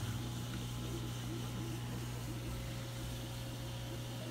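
Steady low hum with an even hiss: the constant drone of running aquarium pumps and filters in a room full of tanks.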